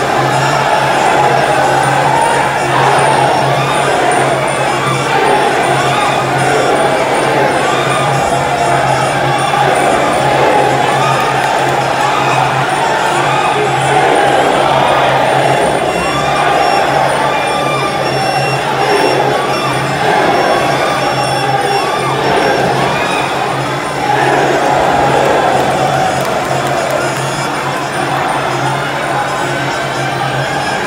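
Traditional Muay Thai ringside music (sarama: Thai oboe with drums) playing without pause under a large crowd shouting and cheering throughout.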